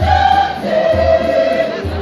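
A large mixed choir singing a gospel hymn in held, swelling notes, accompanied by a low drum beat about once a second.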